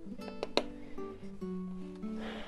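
Background music: acoustic guitar playing a string of plucked notes.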